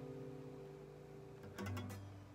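The final chord of a steel-string acoustic guitar ringing out and fading away. About one and a half seconds in, a brief low note with a few clicks of string noise.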